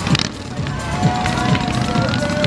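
Parade street noise: music with a steady beat of about two to three thumps a second, with people's voices drawn out in long held, falling calls over it.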